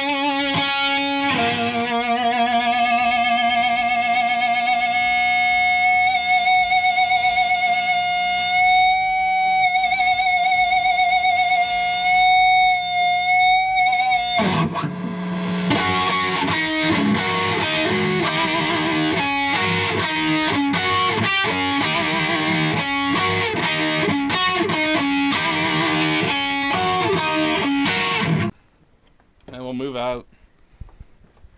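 Distorted electric guitar lead from a Gibson Les Paul played through a 100-watt all-tube Marshall JCM2000 Triple Super Lead head. A long held note with vibrato rings for about thirteen seconds, then a fast run of notes follows and cuts off suddenly near the end.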